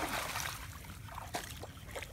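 A gar splashing as it is tipped from a mesh landing net into shallow water. The splash fades within the first half second, followed by water dribbling and a few small drips.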